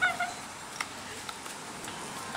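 A woman gives a brief high squeal right at the start as she falls on a mulch path. After it comes a low, steady outdoor hiss with a faint tap or two.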